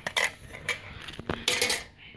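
Metal parts of a disassembled DVD drive clicking and clattering against a screwdriver as they are handled: several sharp clicks and a longer rattle just past the middle.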